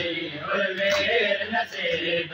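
Men chanting a noha in unison, mourning voices in a crowd, with sharp chest-beating (matam) slaps landing about once a second.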